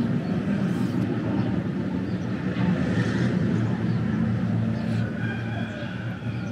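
A steady, low engine hum, with faint higher tones coming in near the end.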